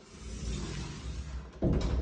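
Low rumbling handling noise from a hand-held phone being carried, with a short thud near the end.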